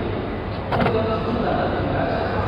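Toyota Hilux's pop-out dashboard cup holder being pushed shut, latching with a quick double click a little under a second in, over a steady background hum and chatter.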